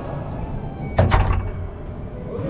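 Racquetball court door slamming shut about a second in, a sharp bang followed by a few quick knocks that die away within half a second.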